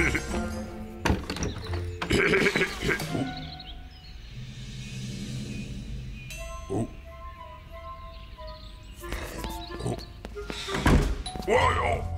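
Cartoon background music with a character's short wordless vocal sounds near the start and end, and a few knocks and thumps in between.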